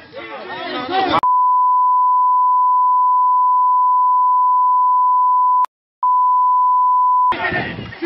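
A steady 1 kHz censor bleep, a single pure tone that cuts in about a second in over the footage's voices and holds for about six seconds, broken once by a click and a short gap near the end. Voices from the phone recording are heard just before and just after it.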